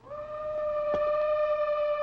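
Dramatic music sting closing a scene: one long held note that slides up into pitch at the start.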